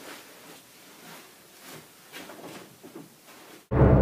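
Soft rustles and light knocks of someone getting up and moving about in a small room, faint and irregular. Loud music starts suddenly near the end.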